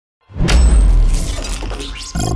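Intro sound effect for a logo reveal: a sudden deep boom and crash about a quarter to half a second in, then a tail that fades away.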